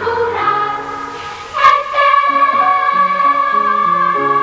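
Children's choir singing with instrumental accompaniment over a moving bass line. About a second and a half in, after a brief softer passage, a long high note is held.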